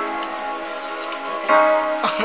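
Keyboard music: a held chord slowly fading, then a new chord struck about one and a half seconds in.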